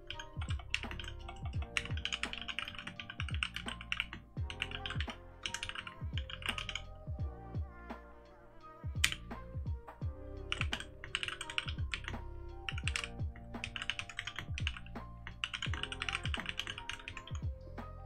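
Fast touch-typing on a mechanical keyboard: runs of clattering keystrokes with a short pause about eight seconds in, over background music.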